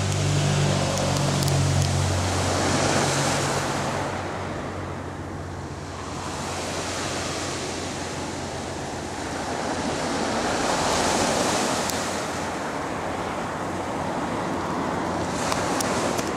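Small waves breaking and washing up a pebble beach, the surf swelling and falling back in slow surges. A low hum lies under the first few seconds.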